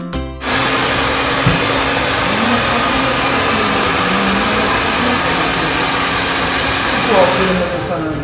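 Handheld hair dryer switched on about half a second in, blowing steadily on a child's hair, then switched off just before the end.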